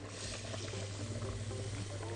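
Dry basmati rice poured in a stream into a pot of simmering broth: a soft hissing patter of grains hitting the liquid over its bubbling.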